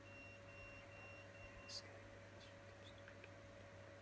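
Near silence: room tone with a steady low electrical hum, a faint broken high tone in the first two seconds and a brief soft hiss just before two seconds in.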